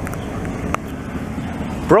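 Low, steady rumble of a classic Cadillac DeVille convertible's V8 as the car rolls slowly past at low speed, mixed with street noise.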